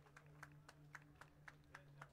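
Faint, quick hand clapping, about six or seven claps a second, over a low steady hum.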